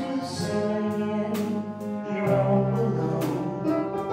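Live jazz band playing: held notes from the horn and keyboard over electric guitars, with steady drum and cymbal hits.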